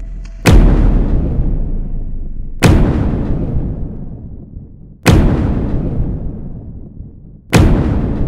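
Cinematic trailer-style impact hits: four deep booms about two and a half seconds apart, each dying away in a long rumble.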